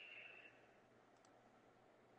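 Near silence: faint hiss of room tone on a live video call, with a slightly stronger brief hiss in the first half second.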